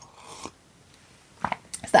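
A short, soft sip of tea from a mug in the first half-second, then a woman's voice starting to speak near the end.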